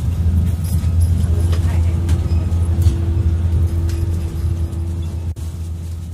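Running noise heard inside the passenger car of a 485-series limited express train: a steady low rumble from the moving train, with scattered light clicks. A faint steady hum comes in for a few seconds in the middle.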